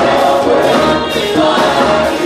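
Church praise team singing a gospel song together, several voices amplified through handheld microphones, loud and steady.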